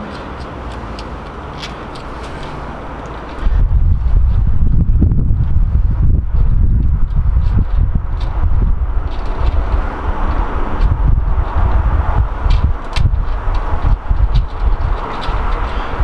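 Wind buffeting the microphone, a loud fluttering low rumble that sets in suddenly about three and a half seconds in and carries on, over faint small clicks of fingers working a bicycle hub's gear-indicator pull rod into the axle end.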